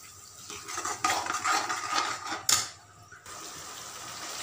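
Metal spatula scraping and stirring thick tomato-onion masala as it fries in a metal kadhai, with a sharp clink of the spatula against the pan about two and a half seconds in.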